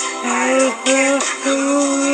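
A man singing a slow melody solo, holding long steady notes with short slides between them.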